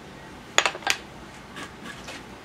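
Two sharp clinks of hard objects knocking together, about a third of a second apart, over a faint steady background hum.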